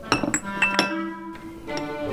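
Background music with a few sharp clinks of tableware, cups and glasses on a table, in the first second.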